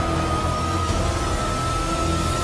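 Subway train running: a heavy rumble and rushing noise with a steady high metallic squeal that creeps slowly upward in pitch.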